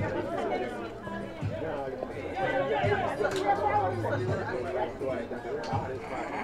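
Several people talking over one another, a steady background chatter, with a couple of short sharp taps.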